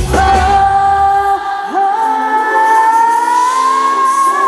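Live pop band with a female lead singer holding one long note that slowly rises in pitch. The bass and drums drop out about a second and a half in, leaving the held note over lighter accompaniment.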